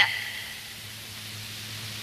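A pause in a man's speech, filled with the steady hiss of the recording's background noise.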